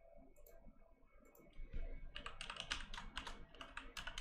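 Two faint clicks, then a fast burst of typing on a computer keyboard from about halfway through, the loudest part.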